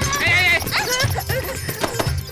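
Background music with a pulsing beat, over a quick run of short, high, rising-and-falling squeaks from a swarm of cartoon rats.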